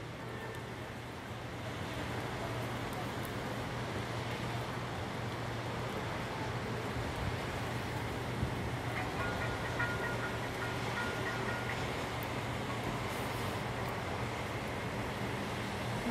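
Heavy rain falling steadily, an even hiss throughout, with traffic on the flooded road below adding a low steady hum.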